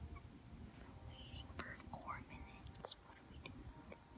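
Faint low room rumble with a few soft clicks and a brief, breathy whisper about halfway through.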